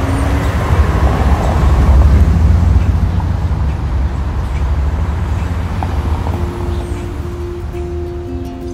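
A low rumbling noise like road traffic swells to a peak about two seconds in, then slowly fades. Over its last couple of seconds, a few long held guitar notes come in.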